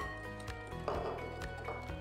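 Background music with held tones, with a sharp click at the start and a few fainter light taps of a wire whisk against a glass mixing bowl.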